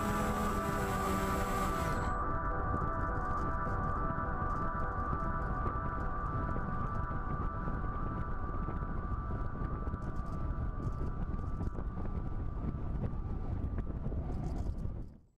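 Model airplane in flight, heard from its onboard camera: a steady motor whine with wind rushing over the microphone.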